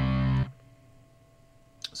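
Sampled heavy-metal electric guitar power chord from the Cinesamples Iron Guitars library, played from a MIDI keyboard. It sustains with distortion and cuts off abruptly about half a second in.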